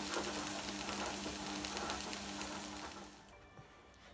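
Onion, peas and tomatoes sizzling gently in a frying pan on a gas hob turned low, with small spitting crackles. The sizzle fades away about three seconds in.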